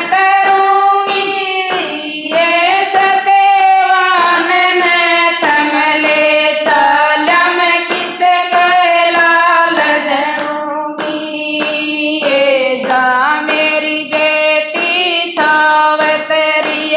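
Women singing a Haryanvi devotional bhajan together, unaccompanied, keeping time with rhythmic hand claps.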